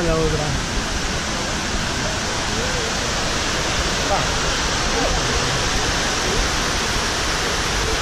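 Steady rush of water cascading down the walls of a 9/11 Memorial reflecting pool, a large man-made waterfall, holding an even level throughout.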